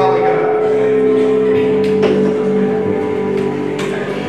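Soft live band music under a pause in the talk: keyboard chords sustained with one long held note, and a couple of faint taps.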